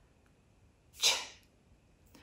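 A woman says the speech sound 'ch' once, on its own, about a second in: a short breathy burst of hiss with no voice behind it, modelled as a target sound for articulation practice.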